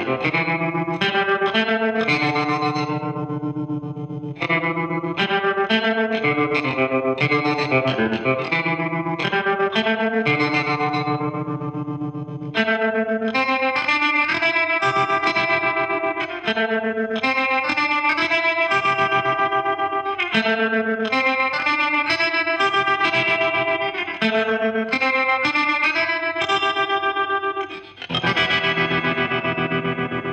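Fender Telecaster electric guitar played in chords through an EHX Wiggler set to tremolo, its square-wave chop cutting the volume right down and bringing it back very quickly, so each chord pulses fast and evenly. The amp tone is slightly driven.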